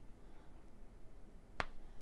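A single short, sharp pop about one and a half seconds in: a square resin diamond-painting drill snapping into place as a wax-loaded drill pen presses it onto the adhesive canvas.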